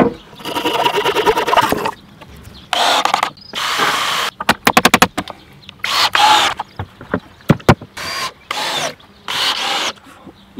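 Cordless drill driving screws into pallet wood in a series of short bursts, the motor whirring up and stopping each time. A quick run of rapid clicks comes about halfway through.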